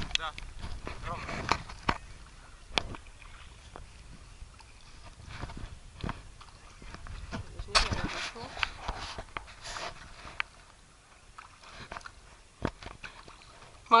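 River water sloshing and splashing around an inflatable ring at the waterline, with scattered sharp clicks and knocks and a louder splashy stretch just before eight seconds in.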